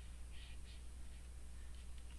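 Quiet room tone: a low, steady hum, with a couple of faint, brief scratchy sounds about half a second in.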